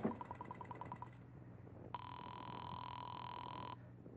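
Radio-drama sound effect of a telephone call being placed. A run of quick rotary-dial clicks, about ten a second, lasts for the first second. A steady ringing tone follows for nearly two seconds and cuts off sharply. A faint low hum runs underneath.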